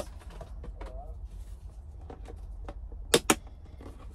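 Light handling knocks and rustles of a clear plastic storage bin, then two sharp clicks close together about three seconds in as its plastic lid snaps shut.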